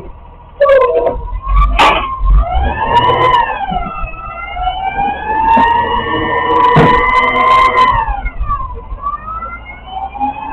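Side-loading garbage truck pulling away: a high whine that climbs as it speeds up and drops back at each gear change, with a couple of sharp clunks from the truck body.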